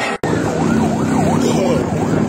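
A vehicle siren yelping, its pitch sweeping up and down about three times a second, starting abruptly after a short gap near the start, over a steady low hum.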